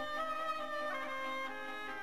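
Background music: a slow melody of long, held notes.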